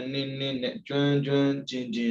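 A man's voice reciting a scriptural text in a level, held-pitch chanting tone, in phrases of about half a second with a brief break just before the middle.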